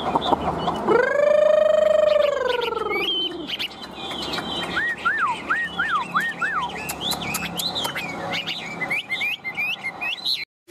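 A caged Chinese hwamei singing: a run of five quick, falling whistled notes about halfway through, then rapid high chirps and whistles. Before that comes a long, wavering tone that rises and falls over about two seconds.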